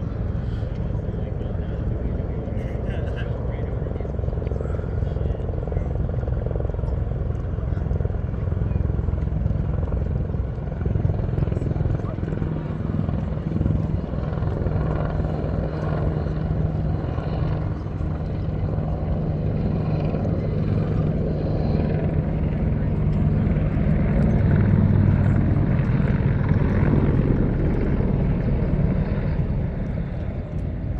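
Black Hawk military helicopters running overhead: a steady low rumble of rotors and turbines with a low hum, growing louder about three-quarters of the way through.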